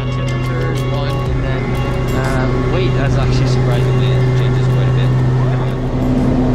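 Steady low drone of the Cessna Conquest I's twin Pratt & Whitney turboprop engines and four-blade propellers, heard inside the cabin, with music playing over it.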